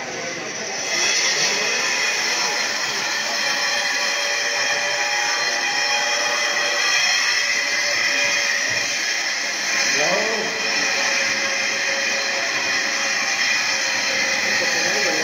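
Crowd of devotees' voices filling a busy temple, unintelligible, over a steady high-pitched ringing hiss that sets in about a second in.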